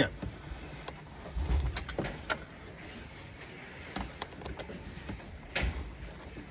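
Scattered small clicks and a few dull knocks of wires and crimped spade connectors being handled and pushed onto terminals of a boat's switch wiring harness.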